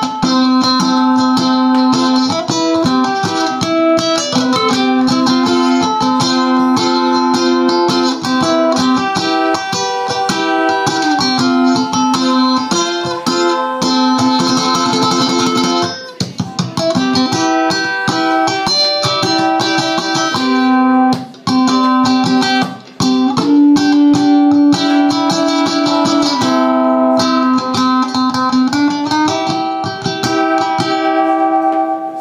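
Ukulele strummed through a song, its chords changing every second or two, with a couple of short breaks in the strumming past the middle.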